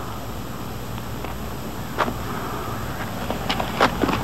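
Steady outdoor background noise on the soundtrack, with a single sharp knock about halfway through and a few more quick knocks near the end, like footfalls or hooves on packed dirt.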